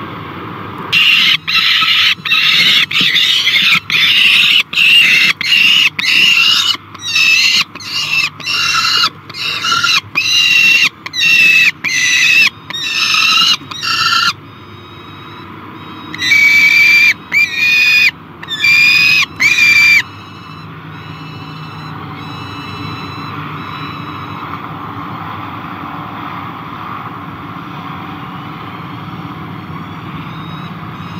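Juvenile peregrine falcon's loud, repeated begging wails, about two a second for some 13 seconds, then four more after a short pause, as an adult brings food to the nest box.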